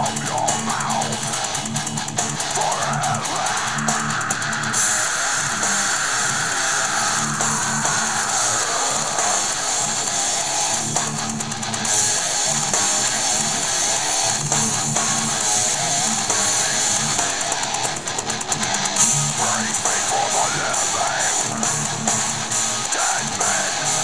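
Heavy metal music: a distorted electric Stratocaster playing riffs along with a recording that has drums and bass, steady and loud.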